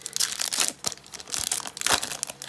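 Foil wrapper of a Yu-Gi-Oh! booster pack crinkling in the hands, irregular crackles with the loudest just before the end.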